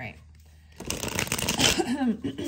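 Tarot cards being shuffled by hand: a dense, fast run of papery card clicks that starts just under a second in and keeps going.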